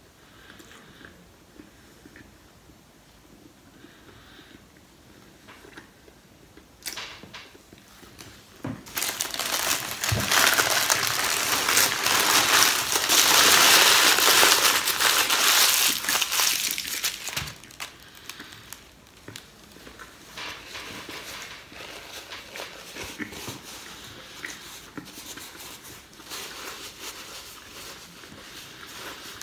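A sandwich wrapper being crumpled into a ball by hand: dense crinkling and crackling, loudest for several seconds in the middle, then softer rustling.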